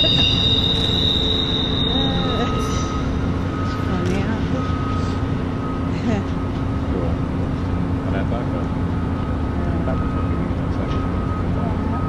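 Electric passenger train at a station platform. Steel wheels squeal for about the first second, then the train gives a steady low hum, with a thin high tone coming and going.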